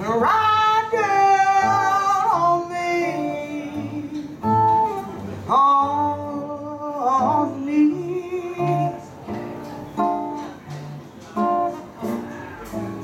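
Live blues vocal over acoustic guitar: a woman holds a long note with vibrato at the start and another from about five and a half seconds in, while the guitar strums a steady rhythm beneath.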